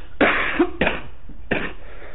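A man coughing: three short coughs, each about two thirds of a second after the last.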